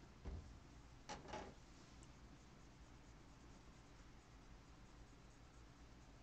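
Near silence with faint handling sounds: a soft low thump just after the start, then a short rubbing sound about a second in, like a swab wiped over a small metal chip carrier.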